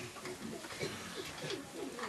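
Faint low bird calls, a run of short, overlapping cooing glides.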